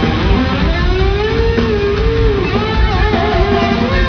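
Live heavy metal band playing loud, with electric guitar, bass and pounding drums. A long, bending held note rides over the top in the first half.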